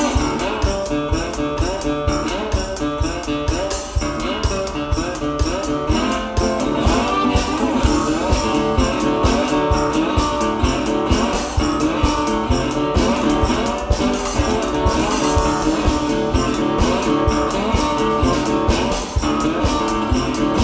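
Blues-style slide guitar played with a wooden rosewood slide, with pitches gliding between notes, over a drum kit keeping a steady beat.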